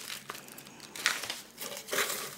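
Shredded paper packing filler rustling and crinkling as a hand digs through it in a cardboard box, with sharper crackles about a second in and near the end.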